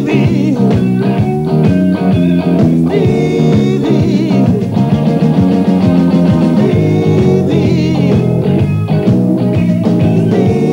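Blues-rock band playing live: electric guitars over bass and drums, with a man's voice singing at times.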